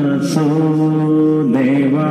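Devotional vocal music accompanying a Satriya dance: a voice holds long sung notes, bending slightly in pitch, over a steady drone, with a brief high hiss near the start.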